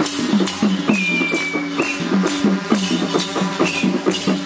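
Nepali folk dance music for a peacock dance: drums keep a quick, even beat of about four strokes a second, each stroke dropping in pitch, with a jangling rattle on every beat.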